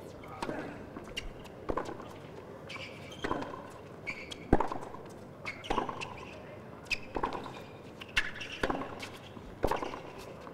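Tennis rally on a hard court: racket strikes and ball bounces land about once a second, with short high squeaks from the players' shoes on the court between them.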